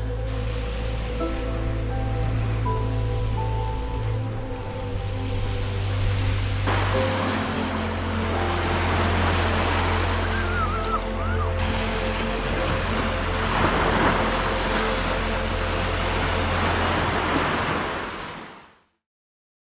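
Background music with long held notes and a steady bass line, over the wash of small waves breaking on a sandy beach. The surf grows louder about a third of the way in, and everything fades out at the end.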